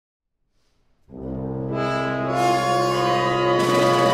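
A sustained low brass chord from an orchestra enters about a second in after silence. It swells as more instruments join in layers, growing fuller near the end.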